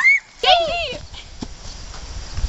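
A girl's high-pitched voice: a short rising cry at the very start, then a quick run of squealing cries with rising and falling pitch about half a second in.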